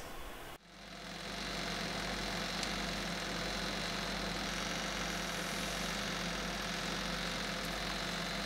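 Small electric oven running with a steady, even hum while a dish bakes, starting about half a second in.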